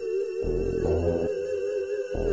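Scouse house (bounce) dance music: a held, wavering high note runs throughout, and a deep bass line comes in about half a second in and drops out again before the end.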